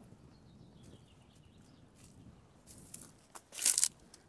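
Crunching rustle of dry dead plant stalks and grass stepped through, in a few short bursts, the loudest near the end.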